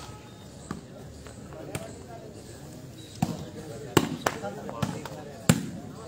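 A volleyball being struck by hand during a rally: a string of sharp slaps, the loudest about four and five and a half seconds in, over crowd voices.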